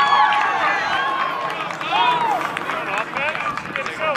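Voices at an outdoor lacrosse game shouting short calls, several overlapping.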